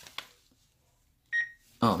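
A short, high electronic beep from the eLinkSmart Wi-Fi security camera about one and a half seconds in, as it reads the pairing QR code shown on the phone screen. Two faint clicks come near the start.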